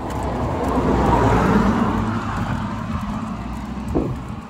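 A car passing on the road, its tyre and engine noise swelling to its loudest about a second and a half in and then fading. A short, sharp knock comes near the end.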